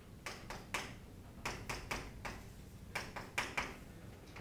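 Chalk tapping and scraping on a chalkboard while writing: a dozen or so short, sharp taps in small clusters.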